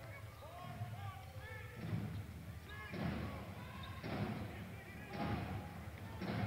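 Basketball dribbled on a hardwood court, a bounce about once a second, under arena crowd chatter.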